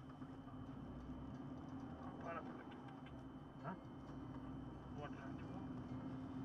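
Car engine and road noise heard from inside the cabin while driving, a steady low drone throughout, with a few faint snatches of talk.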